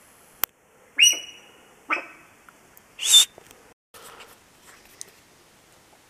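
Sika deer hind calling in alarm: a click, then two short high-pitched squealing calls about a second apart that drop slightly in pitch, followed a second later by a loud, sharp hissing blast.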